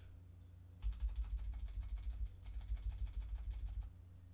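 Rapid keystrokes on a computer keyboard, about ten presses a second, starting about a second in with a brief pause midway. The keys are deleting a phrase of text character by character.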